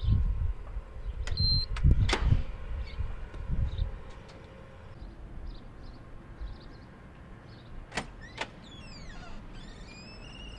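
An entry door's card reader beeps once, among low thumps and sharp clicks of the door's lock and hardware as the door is worked. Later come two sharp clicks and a brief run of squeaky falling chirps.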